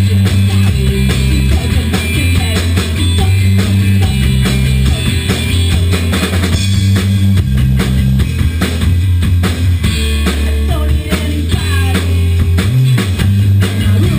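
Rock band playing live in a small rehearsal room: a drum kit, a bass guitar and electric guitars together in a steady, driving passage.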